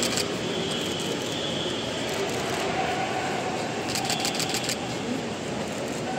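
Steady outdoor airport-curb ambience: a constant wash of traffic and crowd noise, with a quick burst of rapid clicks about four seconds in.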